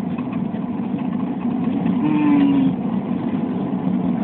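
Steady engine and road noise heard inside a car cabin, with a short, low held tone about two seconds in.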